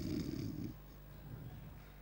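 A man doing a mock snore through a microphone, a low rattling snore that stops under a second in, leaving faint room tone.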